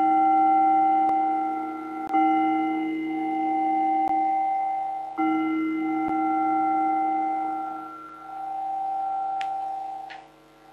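A singing bowl rings and is struck twice more, about two seconds in and about five seconds in, each stroke giving a several-toned ring that wavers in loudness as it slowly dies away; a small click comes near the end. The strokes mark the close of a guided meditation.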